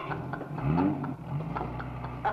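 A woman's hearty laughter trailing off into rising, drawn-out vocal sounds, over a steady low hum.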